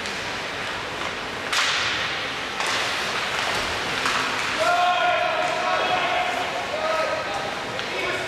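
Ice hockey play in an arena: a sharp crack with a scraping tail about one and a half seconds in and another near three seconds. From about halfway through, a voice calls out in a long held shout, with a shorter one near the end.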